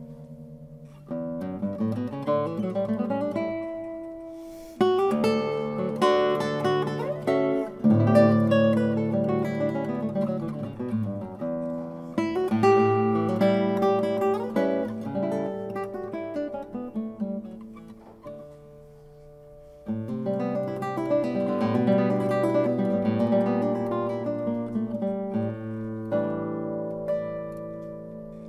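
An Arcangel classical guitar played solo: runs of plucked notes broken by loud full chords. Near two-thirds of the way through it dies down to a soft, fading passage, then a loud chord starts the next phrase.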